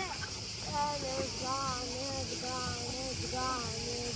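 Indistinct voices talking at a distance, over a steady high-pitched drone of cicadas.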